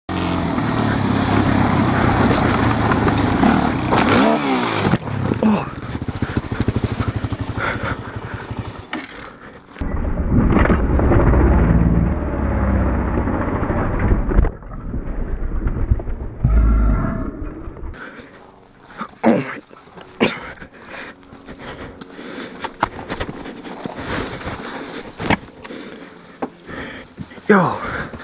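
Suzuki LTZ400 ATV's single-cylinder four-stroke engine running and revving as it is ridden over rough ground, with scattered knocks and rattles from the machine jolting over rocks.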